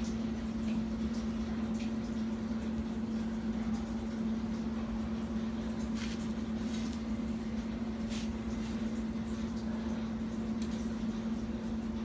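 A freshly laced bicycle wheel on a Shimano Alfine 8 internal-gear hub spinning in a truing stand, with a few faint, irregular ticks over a steady low hum.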